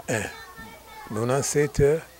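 Speech only: a man talking in an interview.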